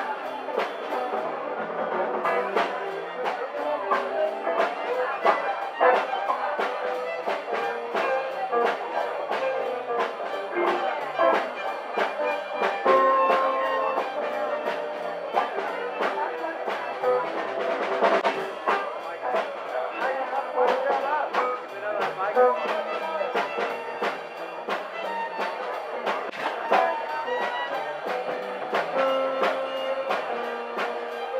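Live band playing an instrumental shuffle: guitars over a steady beat, with long held melody notes on top.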